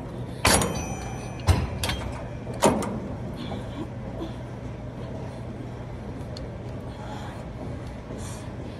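Cable machine weight stack clanking: four sharp metallic clanks in the first three seconds, the first ringing briefly, then only a steady low hum.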